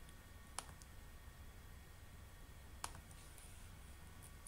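Two short, sharp computer-mouse clicks about two seconds apart, over a faint low room hum.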